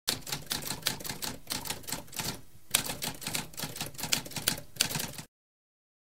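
Typewriter typing: a rapid run of key strikes with a short pause a little before three seconds in, stopping about five seconds in.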